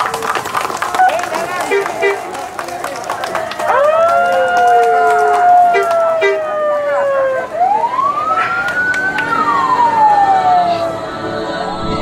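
Clapping and crowd noise, then from about four seconds in vehicle sirens wailing, each a long rising and slowly falling sweep, with several sounding together as a convoy sets off.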